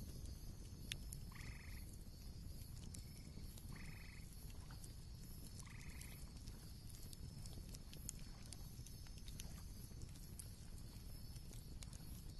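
Faint outdoor night ambience: an animal gives three short calls about two seconds apart in the first half, over a steady faint high hiss and scattered small clicks.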